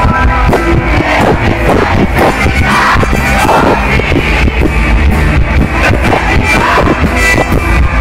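A band playing rock music live, with singing, loud and continuous.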